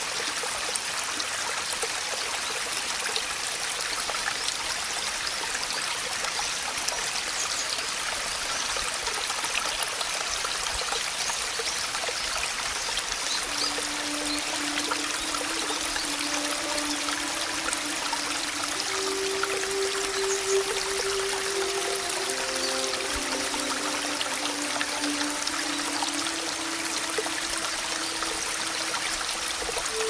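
Steady rain, an even hiss of falling water, with soft instrumental music whose long, low held notes come in about halfway through.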